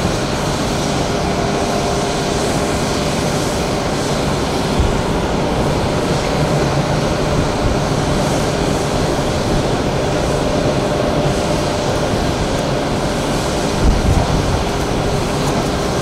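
Twin-engine jet airliner's engines running as it rolls along the runway: a steady noise with a faint steady whine through it.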